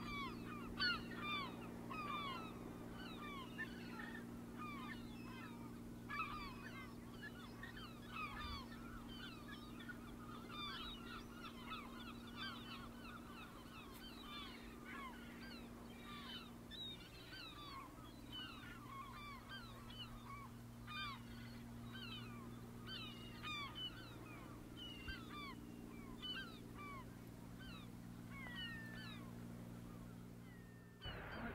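A flock of birds calling: many short chirping calls overlapping all the way through, over a faint steady low hum.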